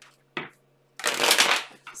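A tarot deck being shuffled by hand. There is a short flick of cards, then about a second in a longer rush of cards sliding and falling together that lasts over half a second.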